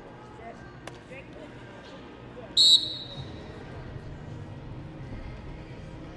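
A referee's whistle gives one short, high blast about two and a half seconds in, signalling the start of the wrestling bout. Under it runs the steady murmur of a large arena hall.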